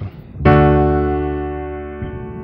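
Digital piano (Kurzweil Academy) playing a D major chord with both hands, struck once about half a second in and left to ring, fading slowly.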